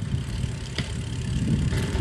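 Wind rumbling on a phone's microphone during a bicycle ride, a low fluttering rumble, with one faint click a little under a second in.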